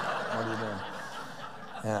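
A man chuckling into a microphone over an audience's laughter that fades away during the first second.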